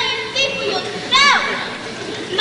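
High-pitched children's voices calling out in a large hall, with a short cry about half a second in and a squeal that falls sharply in pitch just past a second in.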